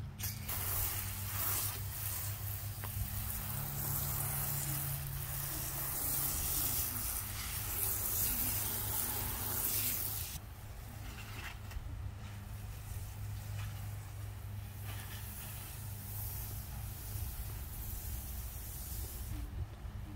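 Water spraying from a hose nozzle onto soil, watering in freshly planted bulbs: a steady hiss that drops away sharply about ten seconds in, leaving a fainter hiss.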